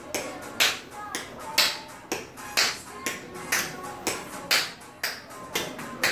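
Tap shoes clicking on a tile floor during a tap routine, over recorded music; sharp clicks come about twice a second, with a stronger one about once a second.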